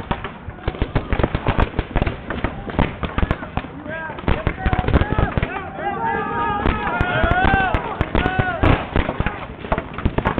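Paintball markers firing many sharp pops in rapid strings across a hyperball field. Players shout in the middle of the stretch.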